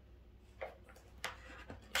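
A few faint, light clicks and taps over a steady low hum.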